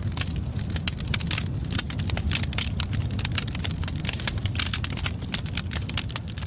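A large burning pyre crackling: dense, irregular snaps and crackles over a steady low rumble.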